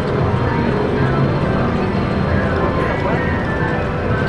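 Casino-floor din: background chatter with overlapping slot-machine chimes and jingles, while the Titanic slot's reels spin and stop.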